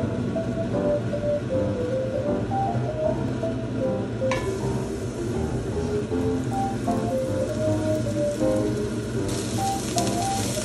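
Minced garlic sizzling in oil in a cast-iron pan, under light background piano music. The sizzle jumps louder suddenly about four seconds in and again near the end as sliced green onions go in.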